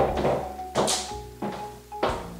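Black patent high-heeled pumps stepping on a laminate floor: a few sharp heel clicks over background music.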